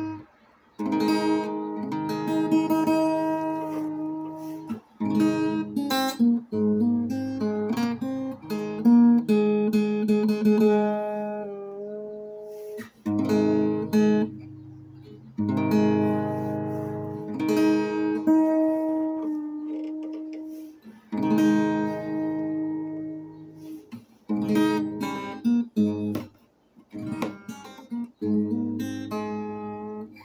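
Acoustic guitar played: strummed and picked chords that ring out and fade, broken by a few short stops where the playing halts.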